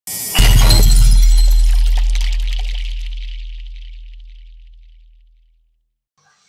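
Intro sound effect: a sudden crash with a deep boom under it, which rings on and fades away over about five seconds.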